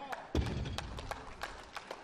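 A loaded barbell with 232.5 kg of bumper plates is set down on the lifting platform with one heavy thud about a third of a second in, at the end of a completed deadlift. Scattered hand claps follow.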